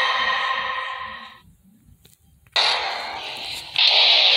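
Film score music fading out, then about a second of near silence. A sudden burst of noise comes in and dies down, and a louder one near the end starts the next music cue.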